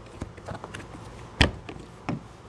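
Plastic child-safety lock on a hot tub cover being worked by hand: small clicks and rattles, with one sharp click about one and a half seconds in.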